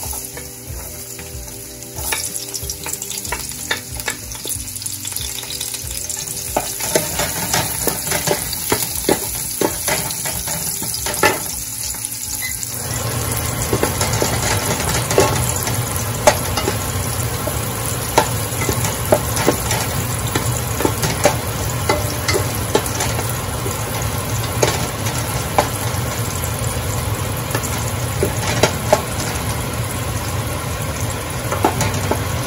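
Chopped garlic sizzling in hot oil in a metal pot, stirred with a wooden spatula that clicks and scrapes against the pot. The sizzle grows fuller and louder a little under halfway through.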